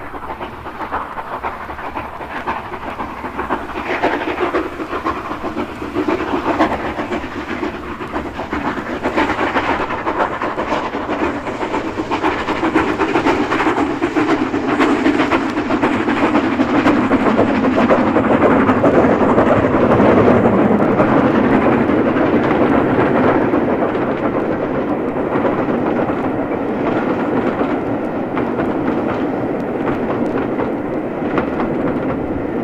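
Steam-hauled train running past, its wheels clicking over the rail joints, growing louder to a peak about two-thirds of the way through and then easing slightly. Played from a vinyl LP recording.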